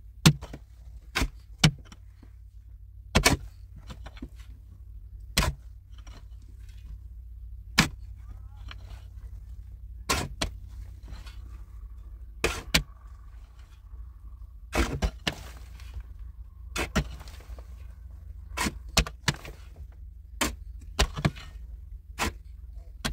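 Pickaxe and shovel digging into hard, dry, stony earth. Sharp blows land irregularly every second or two, sometimes in quick pairs.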